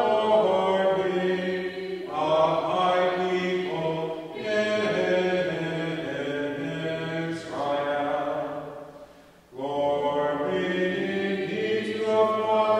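Voices singing a hymn in slow, held phrases of two or three seconds each, with brief breaks for breath between them.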